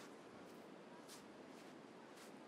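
Faint footsteps crunching in beach sand, about two steps a second, over a low steady wash of surf.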